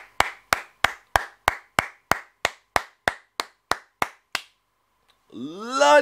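A person clapping hands in a slow, even rhythm, about fourteen claps at roughly three a second, stopping about four and a half seconds in. A man's 'Whoa' follows near the end.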